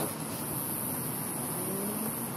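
Steady background hiss and room noise of the recording, with no speech.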